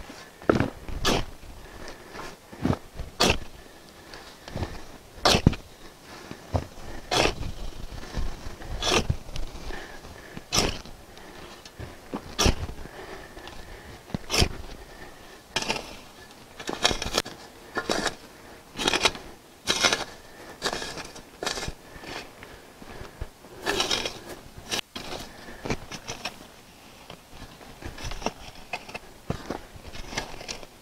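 A long-handled steel shovel scooping amended soil and throwing it into a planting hole: repeated scrapes and thuds, about one every two seconds at first and coming closer together in the second half, with loose dirt falling after some strokes.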